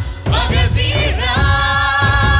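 Singing of a Telugu film song over instrumental backing, with a long held note from a little past halfway through.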